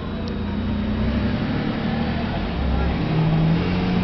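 Low, steady hum of a car engine running, its pitch settling a little lower about three seconds in.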